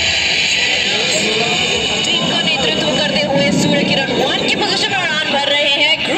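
A crowd of spectators talking over one another, with a steady rushing noise underneath.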